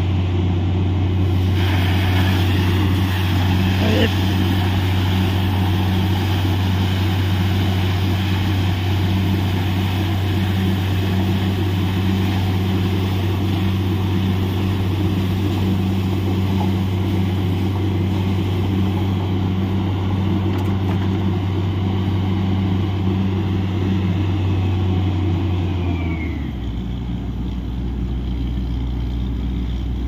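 Truck-mounted borewell drilling rig running steadily at high engine speed, with a continuous hiss over the engine hum, at the finished 300-foot bore. About 26 seconds in the engine drops to a lower, slower speed.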